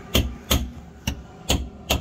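Five sharp metallic knocks, about two a second, each with a short ring after it: hammer blows on steel.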